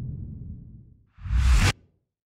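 Logo sting sound effect: a low rumble dies away over the first second, then a sudden deep whoosh swells about a second in and cuts off sharply half a second later.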